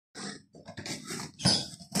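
Packing tape being ripped and peeled off a cardboard parcel, in a run of uneven rasping tears with the loudest rip about one and a half seconds in.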